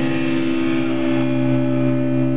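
Distorted electric guitars and bass holding one sustained chord, ringing out with no drums at the close of a black metal song. A lower bass note comes in about a second in.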